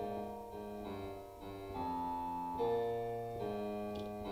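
Yamaha digital piano played with both hands: a held right-hand chord over a swung walking bass line in the left hand, the notes changing about every half second to second.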